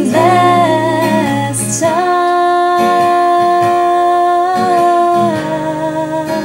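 An original filk song sung in layered vocal harmony, two sung parts at once. The voices hold one long chord from about two seconds in until about five seconds in, then move to a lower chord.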